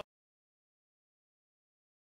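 Silence: the sound track cuts out completely, with no sound at all.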